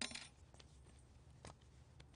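Near silence, with a brief light clink of kitchen containers being handled at the start and a faint tick about a second and a half in.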